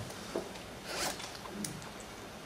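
Faint handling noise at a lectern: a soft rustle about a second in, with a couple of light clicks before and after it.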